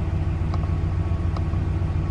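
2013 Dodge Ram pickup's engine idling steadily, a low even hum heard from inside the cab.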